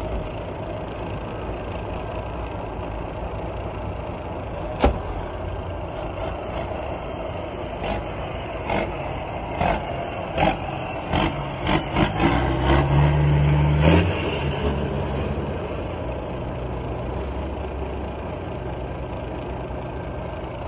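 Truck engine running steadily. A single sharp knock comes about a quarter of the way in, then a run of sharp knocks through the middle, and the engine runs louder with a slightly rising note for a couple of seconds before settling back to a steady run.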